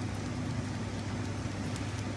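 Steady low hum with an even background hiss, unchanging throughout; no distinct spray squirts or other events stand out.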